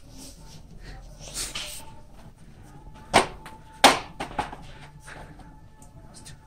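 Quiet background with a faint steady tone, broken by two sharp knocks a little past the middle, followed by a few lighter ticks.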